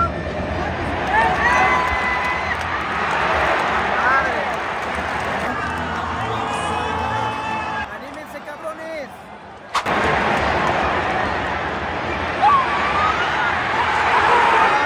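Large football stadium crowd: a dense wall of shouting and chanting voices that drops away for a couple of seconds a little past the middle, then swells again toward the end around a goalmouth save.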